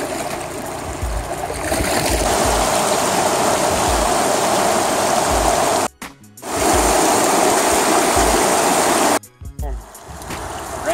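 Rushing water of a shallow, rocky river riffle, a steady hiss with a low thump about once a second beneath it. It cuts out suddenly twice and comes back.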